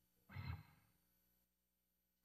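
Near silence, broken about a third of a second in by a single short sigh or breath from a person.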